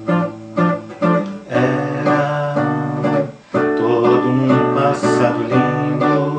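Instrumental tango accompaniment led by acoustic guitar. It plays short detached chords in the first second and a half, then longer held notes.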